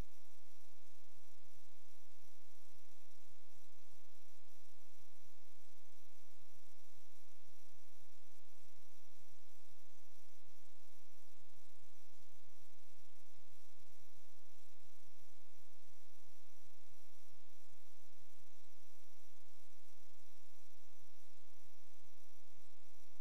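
Steady electrical mains hum with a buzz of many even overtones and a light hiss, picked up by the sewer inspection camera's recording system.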